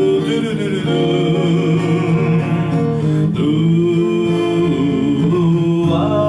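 Romantic bolero instrumental intro led by an archtop hollow-body electric guitar, with a wavering melody line over long held chords.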